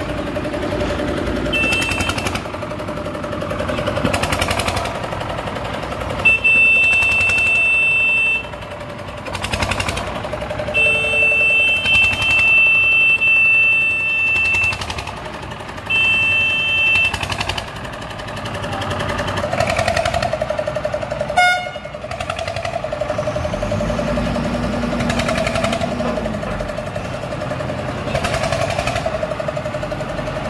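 Asphalt paver's diesel engine running with a steady hum and rapid clatter as it lays blacktop. A high, steady horn-like tone sounds four times, the longest about four seconds, and a single sharp click comes about two-thirds of the way in.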